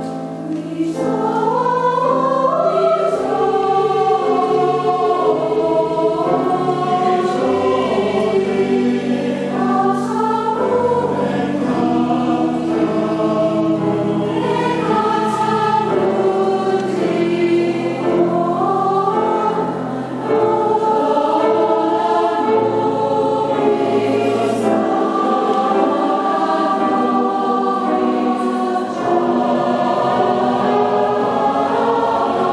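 Large mixed choir singing sustained, slow choral lines with piano accompaniment, the phrase breaking off briefly about two-thirds of the way through before the voices come back in.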